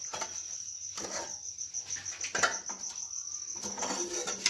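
A cricket chirping steadily in a high, evenly pulsing trill. A few short clatters of a metal pan and its lid come over it, the loudest about two and a half seconds in.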